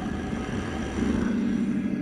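Steady, dense drone with several held tones from the TV episode's soundtrack, running under a scene with a hooded demon.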